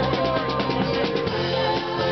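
Live band playing a song, the drum kit keeping a steady beat under the other instruments.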